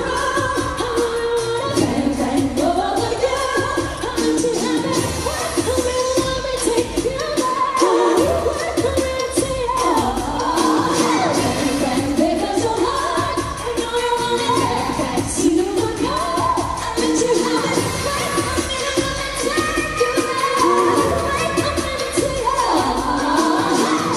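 Female vocal group singing a pop song live into handheld microphones over backing music with a steady beat.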